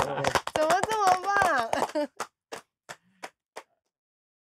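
An excited voice speaking and laughing, then about five single hand claps, roughly three a second, in the second half.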